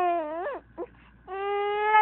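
A baby crying: one cry that falls away about half a second in, a short catch of breath, then a longer, steady cry.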